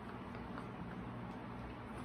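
Faint shoe steps and shuffles of two dancers on a tile floor over a low steady room hum.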